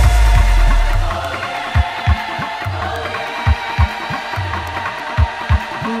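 Instrumental passage of an upbeat electro-pop disco track, with held synth chords and no vocals. A heavy bass note fades about a second in, after which the kick drum hits mostly in pairs.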